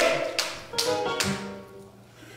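Electronic keyboard chord played under the preacher's exclamation, held and fading away, with a sharp tap just before it about half a second in.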